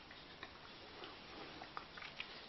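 Almost quiet, with a few faint, irregular small clicks.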